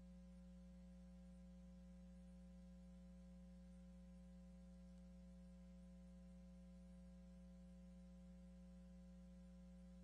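Near silence: a faint, steady electrical hum of a few unchanging tones over light hiss.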